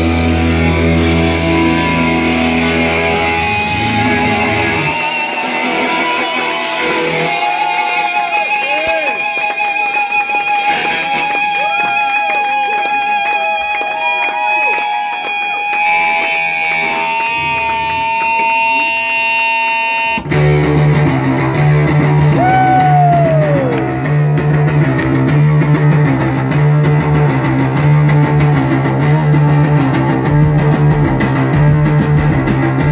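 Live rock band: a song winds down with bass, then electric guitar feedback and effects-laden sustained notes that bend and warble for about fifteen seconds. After an abrupt cut about twenty seconds in, an electric bass riff starts, repeating in a steady pattern.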